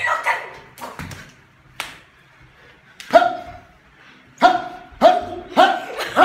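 A dog barking in short, sharp barks: one at the start, then a string of barks about every half-second in the second half. A few sharp slaps or smacks fall in between, about a second in and again near two seconds.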